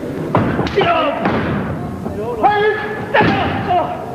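Heavy thuds of a wrestler's body hitting the ring canvas: a few sharp impacts in the first second or so and another about three seconds in. Shouted voices rise and fall between the impacts.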